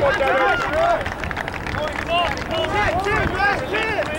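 Many short, overlapping shouts and calls from players and spectators across an open rugby field. They are too distant to make out as words.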